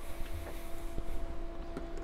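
A few light clicks and handling noises from wires and small electronic parts being worked by hand, over a steady low hum.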